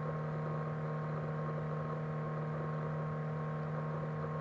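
Steady electrical hum in the recording: several unchanging tones with a faint hiss underneath.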